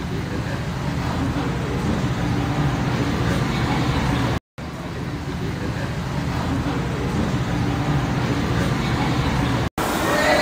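Steady low rumble of road traffic and street noise. It cuts out for a moment about halfway through and again near the end.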